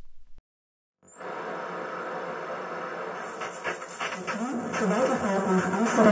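Simulated radio receiver being tuned: after a brief dropout, static hiss rises with a short rising whistle. A German railway-station announcement then fades in through the noise and grows louder toward the end.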